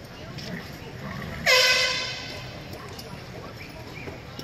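An arena horn sounds once about one and a half seconds in: a single loud, steady note that dips briefly in pitch at the start, lasts about half a second and then fades away.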